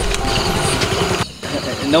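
Motor scooter engine idling with a steady low pulse, briefly dropping out a little past halfway.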